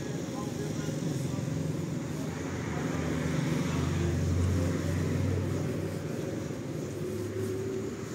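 A motor vehicle passing close by: a low engine rumble that swells to its loudest about halfway through, then fades.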